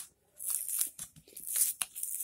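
Plastic blister packaging being cut open along its card backing with a utility knife: a scratchy hiss about half a second in, then a few sharp clicks and crackles of the plastic.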